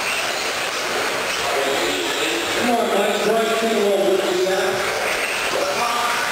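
Electric 2WD modified-class R/C stadium trucks racing on an indoor dirt track: a steady noise of the trucks echoing in the large hall, with indistinct voices standing out from about the middle.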